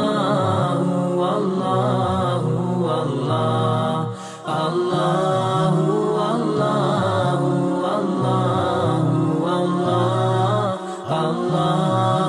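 Intro music of chanted singing: a melodic vocal line that runs on steadily, with two short breaks between phrases, about four seconds in and again near the end.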